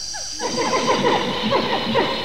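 A sound effect standing in for a crested hadrosaur's amplified call: a dense chorus of many overlapping short, falling calls, starting about half a second in.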